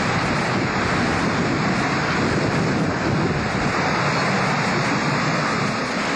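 Hurricane wind blowing hard across a camcorder microphone: a steady, even rush of noise.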